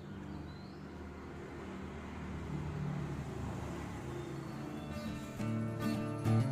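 Background music: held tones that swell through the middle, with new plucked notes coming in near the end.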